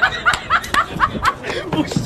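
A person laughing in a quick run of short bursts, about four a second.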